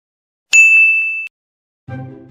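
A single bright ding sound effect about half a second in, ringing for under a second and then cut off abruptly. Music starts just before the end.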